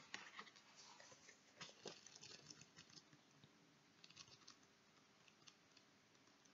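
Near silence with faint scattered clicks and light rustling of cards and a small guidebook being handled, a few taps in the first two seconds and a short cluster about four seconds in.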